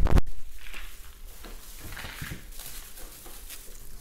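A sharp, loud thump at the very start, then a bag rustling and small items being handled as a pharmacist packs a purchase at the counter.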